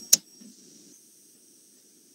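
A single sharp click just after the start, followed by faint low background noise from the microphone.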